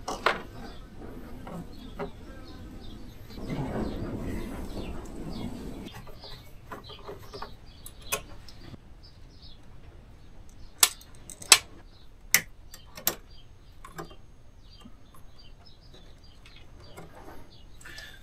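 Hands handling the parts of an opened portable power station: scattered clicks and knocks of circuit board and metal chassis. There is a rustling, scraping stretch a few seconds in, and four sharp clicks close together around the middle.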